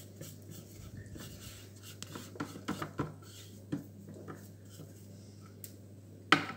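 Thermomix spatula scraping cake batter from the sides of the stainless steel mixing bowl: faint rubbing strokes with a few light knocks in the middle, over a low steady hum.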